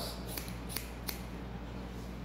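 Hairdressing scissors snipping through a raised section of wet hair: about four short, sharp snips in the first second or so.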